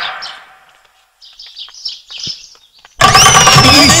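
Film soundtrack: faint high chirps in a quiet stretch, then about three seconds in a loud comedy music cue starts abruptly, with a whistle-like tone that jumps up and slides slowly down in pitch.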